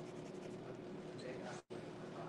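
Eraser rubbing in quick short strokes on a charcoal drawing on paper, faint over a steady room hum; the sound cuts out for an instant about one and a half seconds in.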